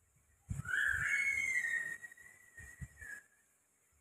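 A whistle: one high tone that slides up and then holds for about three seconds with a hiss above it, ending a little after three seconds. A few soft low knocks are heard with it.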